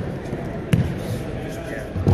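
Bodies thudding onto gym mats in aikido throws and breakfalls: one heavy thud about three-quarters of a second in and another right at the end, over a murmur of voices in a large hall.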